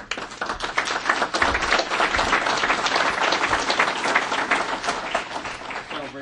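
Audience applauding: many people clapping, starting suddenly and easing off near the end.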